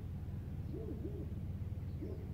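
Two short, low hooting notes from a bird about a second in, over a steady low rumble.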